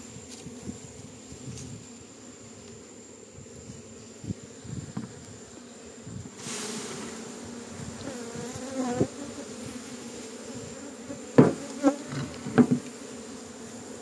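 A large honeybee colony buzzing around an opened hive in a steady hum, with single bees flying close past. A short hiss comes about six and a half seconds in, and a few sharp knocks near the end as the wooden hive boxes are handled.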